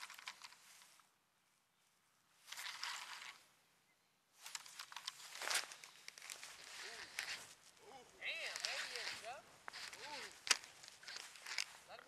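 Faint rustling, scraping and clicking of a camera being handled and set in a new position, in several separate spells, with distant voices faintly audible.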